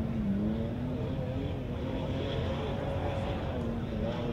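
An off-road vehicle engine running at a fairly steady pitch that wavers slightly up and down, over a hiss of open-air noise.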